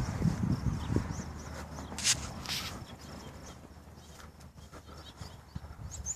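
Footsteps of a person walking outdoors, thumping in the first second or so and fading after, with a couple of sharp clicks about two seconds in. Faint birdsong chirps in the background.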